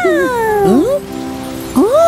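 Wordless, gliding vocal sounds from cartoon child characters: a long falling 'ooh' at the start, a quick upward slide just before a second in, and a rising-then-falling call near the end. Soft background music plays underneath.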